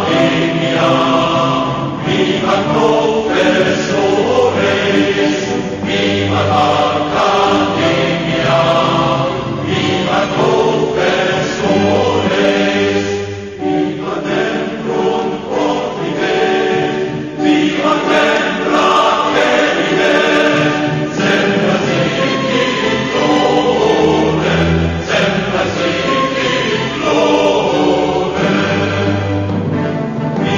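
Choral music, many voices singing slow, sustained chords.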